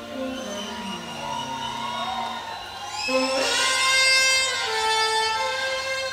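Live jazz saxophone playing. About three seconds in, the saxophone slides up into a loud, bright high note and holds it for a couple of seconds over lower sustained notes.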